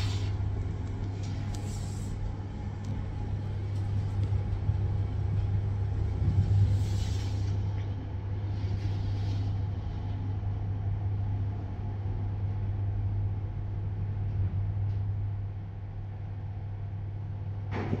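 OTIS 2000 passenger lift car travelling in its shaft: a steady low hum with rumble from the ride, a little quieter in the last couple of seconds.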